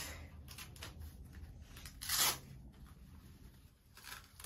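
A child's sneaker being handled by hand: faint rustles and small scrapes, with one short tearing rasp about two seconds in.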